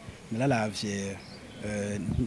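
A man's voice in two short bursts of speech with a pause between, the words not picked up by the recogniser.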